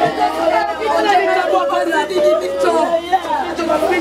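A group of people's voices, mostly women, talking and calling out over one another at once.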